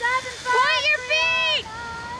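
A woman's loud, high-pitched cries: three in quick succession, the middle one wavering up and down and the last held for about half a second, then a fainter voice.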